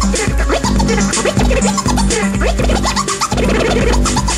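Turntable scratching: a vinyl record pushed back and forth by hand, making rapid, short pitch-sliding scratches over a hip-hop backing beat with regular bass pulses.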